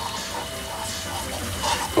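Pistachio cream and diced pancetta sizzling steadily in a non-stick frying pan as the melting cream is stirred with a wooden spoon.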